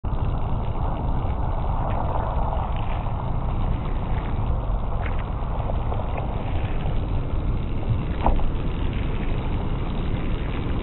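Car windshield washer spraying and wipers sweeping over the glass, under a steady low rumble, with a few faint clicks.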